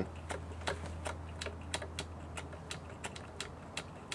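Rapid, uneven light clicking, about five clicks a second, from hand work on a small Cox model airplane glow engine that is not firing: it is not yet running, while the fuel needle setting is still being found.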